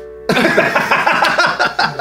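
Men laughing hard, a coughing kind of laugh, starting about a third of a second in, over a song playing underneath.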